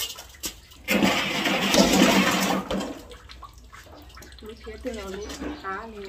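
Water splashing and pouring from basins while dishes are washed by hand, with a loud rush lasting about two seconds, starting about a second in. Dishes clink a few times, and a person's voice is heard near the end.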